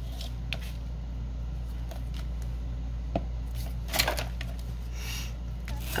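Light paper rustles and a few soft taps from hands pressing down and handling a glued paper collage piece, with a slightly louder rustle about four seconds in, over a steady low hum.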